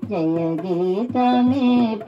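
An older woman singing a Telugu devotional song into a microphone, holding long, wavering notes in two phrases with a short breath between them about a second in. A drum beats steadily underneath.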